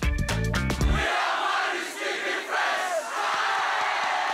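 A funky intro jingle with bass cuts off about a second in, giving way to a large crowd of students in a stand shouting and cheering together.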